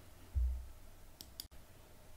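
A dull low thump, then two quick sharp clicks about a second later, as of a computer mouse being clicked at the desk.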